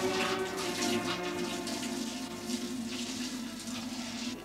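Liquid pouring and splashing from a metal pan through a cloth strainer into a wooden barrel, fading over the last second or so. Held notes of background string music play underneath.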